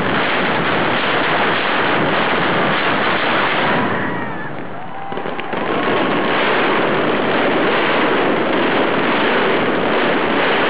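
Mascletà firecracker barrage, the bangs so dense that they merge into one loud, continuous noise. It eases briefly about four to five seconds in, where a few whistles glide down, then comes back at full density.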